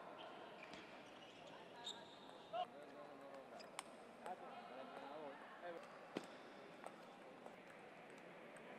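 Table tennis balls being struck by bats and bouncing on tables: a scattered, irregular series of sharp clicks from rallies, over indistinct voices in the background.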